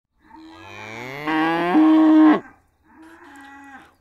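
A cow mooing twice: a long low moo that rises in pitch and swells loud before breaking off, then a second, quieter and shorter moo.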